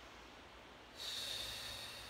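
A woman's deep breath, heard as a breathy hiss that starts suddenly about a second in and lasts about a second.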